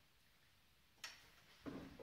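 A monkey leaping off a metal housekeeping cart: a sharp click about a second in, then a soft thump half a second later, against an otherwise quiet room.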